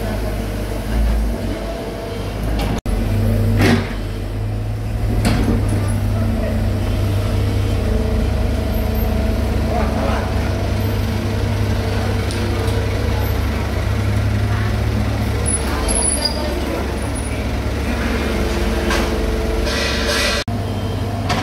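Komatsu PC75 excavator's diesel engine running steadily under working load as it digs and loads soil into a dump truck, with a few knocks from the bucket and boom.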